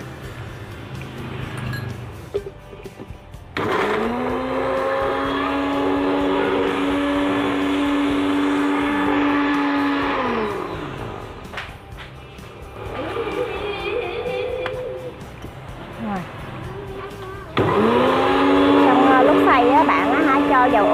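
Electric countertop blender puréeing silken tofu: the motor starts about three and a half seconds in, spins up to a steady whine, runs for about six seconds and winds down. It starts and spins up again near the end.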